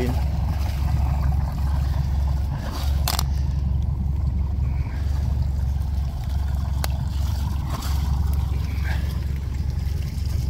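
Engine of an old 1970s canal cruiser running steadily at low revs, a continuous low rumble; only one of the boat's two engines is working, running again after years laid up. Two sharp clicks, about three seconds in and again near seven seconds.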